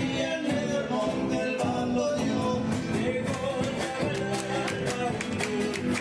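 Live Argentine folk band playing a gato: acoustic guitars strumming over electric bass and a steady drum beat.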